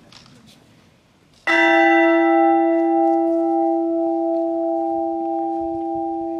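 A new bronze church bell from the ECAT foundry of Mondovì, struck once about a second and a half in and left to ring on, its note fading slowly.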